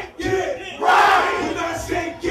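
A rapper shouting hype into a microphone, with the crowd yelling back in a call and response; one big shout about a second in.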